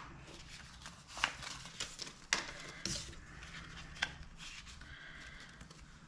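Faint rustling and a few light taps of paper dollar bills being handled and gathered on a tabletop.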